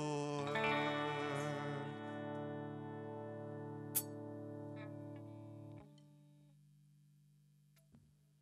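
Closing chord of a worship song held and slowly fading, with an electric guitar ringing out among the band. A single sharp click comes about four seconds in; most of the chord stops short just before six seconds, leaving a faint low tone dying away.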